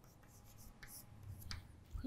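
Chalk writing on a blackboard: faint short scratches and taps of chalk strokes, the last and sharpest about a second and a half in.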